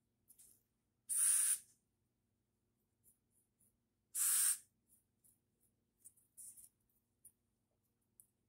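Aerosol hairspray can sprayed in two short hissing bursts about three seconds apart, with a few faint brief scratchy sounds between and after.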